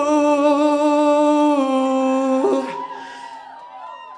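Live band music with a long held sung note over a sustained chord. It stops about two and a half seconds in, and the music drops to a soft, quiet passage.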